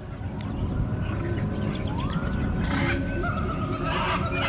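A night chorus of wild animal calls: a dense mass of low calls swells over the first second and holds, with higher whistling calls that glide up in pitch and scattered chirps over it.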